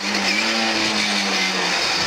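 Lada 2107 rally car's four-cylinder engine heard from inside the cabin over road noise, holding a steady note that sinks gently and drops lower near the end as the car slows for a second-gear chicane.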